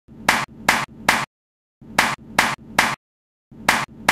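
Hand claps in sets of three, about 0.4 s apart, each set followed by a short silent gap: two full sets and the start of a third, eight claps in all.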